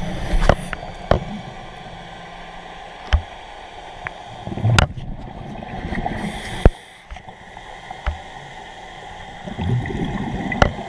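Muffled underwater sound picked up through a camera housing: a low rumble with gurgling, and scattered sharp knocks, the loudest about five and seven seconds in.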